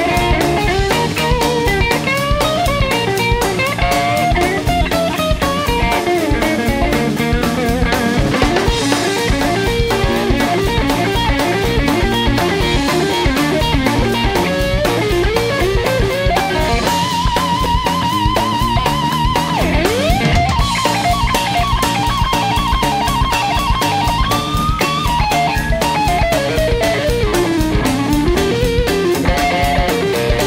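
Electric guitar solo over a rock-and-roll drum beat from a live band. The lead line runs in quick phrases, holds a long note with vibrato about halfway through, then swoops down in pitch before going on.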